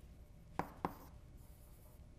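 Chalk tapping and scratching on a blackboard while writing, with two short sharp ticks just over half a second in and just before a second in, as the numbers in a payoff matrix are rewritten.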